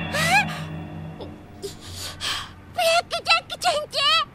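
A young girl's voice crying: a rising, gasping cry at the start, breathy sobbing breaths in the middle, and short wavering whimpers near the end, over soft background music that dies away about a second and a half in.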